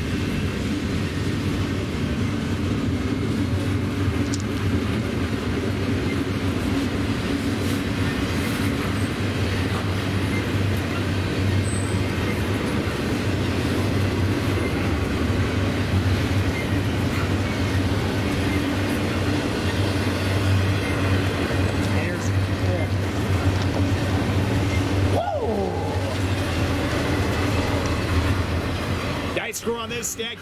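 Double-stack intermodal well cars of a freight train rolling past: a steady rumble of wheels on rail. A brief falling tone sounds a few seconds before the end.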